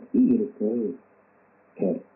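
A pigeon or dove cooing: two short low calls in the first second, with one more brief call just before the end.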